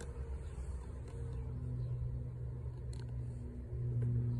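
A steady low motor hum, like an engine running, that grows louder near the end.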